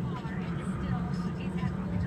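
Steady low hum of a parked Freightliner Cascadia semi truck, heard from inside its sleeper cab.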